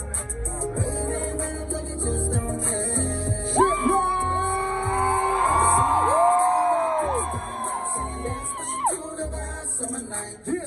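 Live music through the stage PA, a steady bass beat under it. Several voices whoop and hold long high calls over it from about three and a half seconds in to about nine seconds in.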